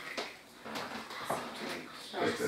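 Chalk on a blackboard while writing: about four short taps and scrapes as figures and a fraction line are written.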